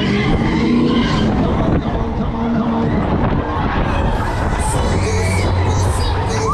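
Breakdance fairground ride in full motion, heard from aboard a spinning car: a loud, steady low rumble of the ride and rushing air, with music playing over it and riders' voices.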